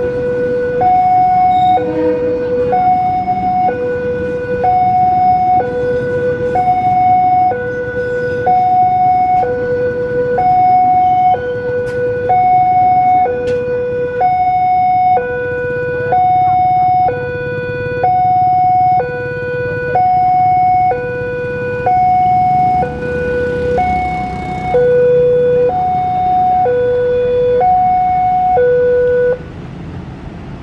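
Railway level-crossing warning alarm sounding an electronic two-tone signal, alternating a low and a high tone about a second each, signalling a train at the crossing. A passing train's low rumble runs underneath. The alarm cuts off near the end.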